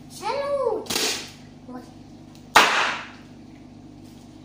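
A small air-filled plastic bag burst with the hands, giving one loud sharp bang about two and a half seconds in. Before it come a child's short rising-and-falling vocal sound and a softer sharp burst about a second in.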